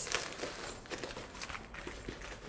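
White packing stuffing inside a padded handbag rustling and crinkling as a hand works through it: soft, irregular little crackles.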